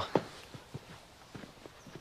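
A few faint, uneven footsteps on a hard outdoor surface.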